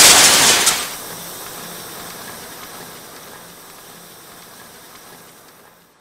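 Aftermath of a car crash-test impact: loud crashing noise for about the first second, then a hiss that fades away steadily over several seconds and stops near the end.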